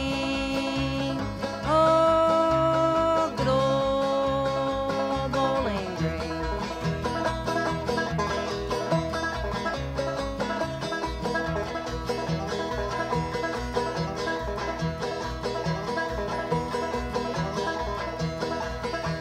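Old-time string band music. For the first six seconds long held notes slide in pitch over a steady plucked banjo and guitar rhythm, then an instrumental break of plucked banjo with guitar runs on.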